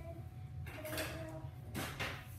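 A kitchen drawer being rummaged and slid shut, with a short sliding rattle near the end, over a steady low hum.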